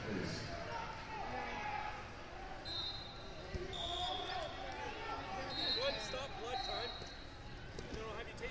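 Chatter of voices in a big gym hall, with four short, high referee whistle blasts in the middle and a few dull thumps.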